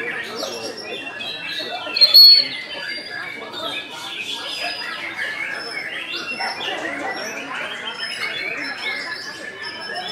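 White-rumped shama (murai batu) singing a dense, unbroken run of varied whistles, chirps and harsh squawky notes, with one loud high whistle about two seconds in. Other contest birds and background chatter mix in.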